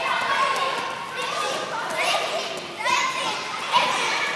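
Several children's voices chattering and calling out over one another, echoing in a large gym hall.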